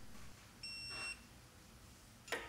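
Digital torque wrench beeping once, a single steady high tone about half a second long, signalling that the set torque on a head stud nut has been reached.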